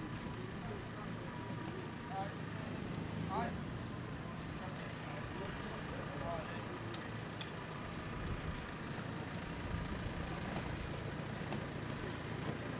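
A steady low engine drone with a faint steady whine above it, and faint distant voices now and then.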